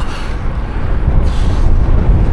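Wind buffeting the microphone of a camera on a moving road bike: a loud, steady, low rumble, with a brief faint hiss about a second and a half in.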